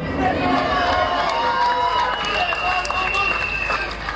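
Rally crowd cheering and calling out in response to a speech, many voices at once, with a long high whistle tone through the second half.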